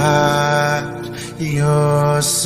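A slow worship song: a voice holds long sustained notes, the first lasting about a second and the next starting about halfway through with a small bend in pitch, over soft accompaniment.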